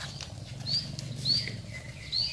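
A small bird chirping twice: short, high rising-and-falling chirps about half a second apart, over a low steady background hum.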